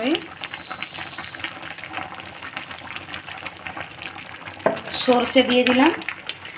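Panch phoron seeds sizzling in hot oil in a metal kadai, with a dense run of small crackles. A voice comes in near the end.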